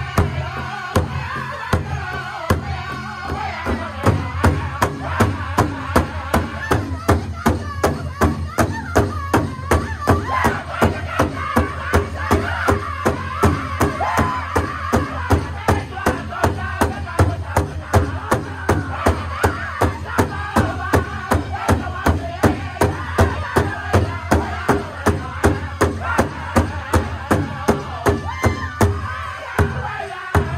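Powwow drum group singing together around one large drum, beating it in unison with steady, even strokes about two to three times a second.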